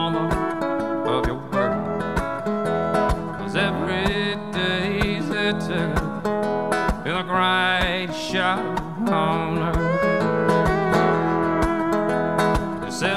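Instrumental break in a live acoustic country-folk song: a fiddle plays a sliding, wavering lead melody over a strummed acoustic guitar keeping the rhythm.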